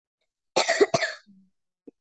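A person coughing: two quick coughs in a row, just over half a second in.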